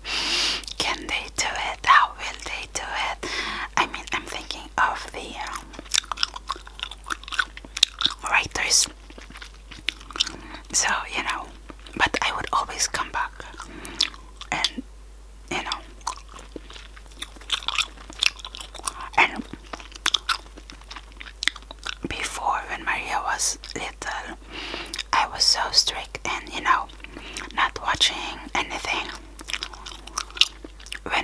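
Close-miked chewing of Chupa Chups Tutti Frutti gum: many irregular wet mouth clicks and smacks, with a short lull about halfway through.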